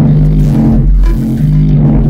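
Live electronic music: a loud, deep, sustained bass drone under layered steady tones, with occasional sweeps rising and falling across it.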